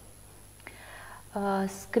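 A short quiet pause, then a woman starts speaking in Romanian a little over a second in.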